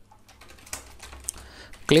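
Typing on a computer keyboard: a quick run of keystrokes.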